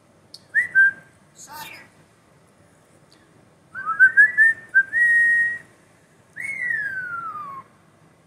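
European starling whistling: a short whistle, then a quick run of rising notes that settles into a held note, then one long whistle falling in pitch, with brief scratchy chatter between the whistles.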